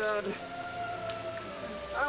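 Rain falling steadily, with a man's crying voice breaking off just as it begins and a soft, slowly falling held note underneath.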